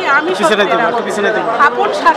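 Speech only: a woman talking to reporters' microphones, with other voices chattering behind her.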